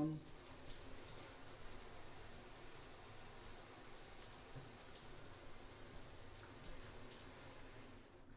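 A shower running: a steady spray of water from a handheld shower head, shut off at the end.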